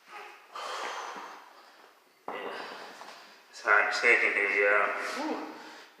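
A man breathing hard, winded from a set of dumbbell presses: two heavy breaths, then a longer, louder voiced exhale ending in "whew" in the second half.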